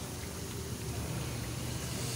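Besan-batter-coated potato patties (aloo tikki) frying in hot oil in a pan over a low flame, a steady bubbling sizzle.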